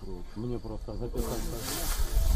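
People talking in outdoor field recording. About a second in, the sound cuts abruptly to a loud, steady rushing hiss with a low rumble underneath.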